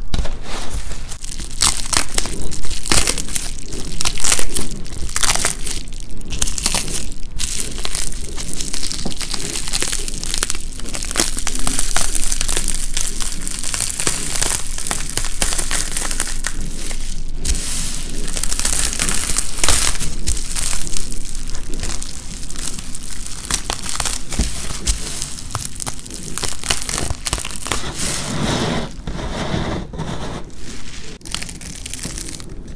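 Bubble wrap crinkling and crackling as a layer of dried paint is peeled off it, close to the microphone: a dense, unbroken run of small crackles.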